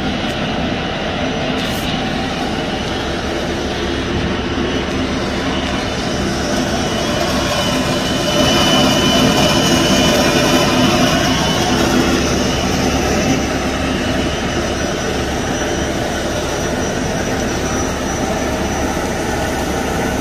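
Steady drone of running machinery with a low hum, swelling louder for a few seconds partway through.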